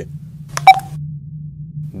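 A single sharp click with a brief beep on the phone line about two-thirds of a second in, over a steady low hum.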